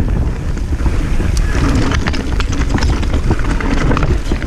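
Mountain bike descending a rocky trail at speed: wind buffeting the microphone as a loud steady rumble, with tyres running over loose stones and many sharp rattling clicks from the bike as it bounces over the rough ground.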